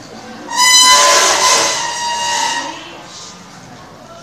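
Loud, high-pitched shriek starting about half a second in, spreading into noisier voices and fading out after about two seconds.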